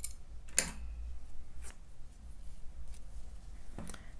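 Faint handling sounds of crochet work as the cut yarn is pulled through to fasten off: a few soft clicks, the sharpest about half a second in, over a low steady hum.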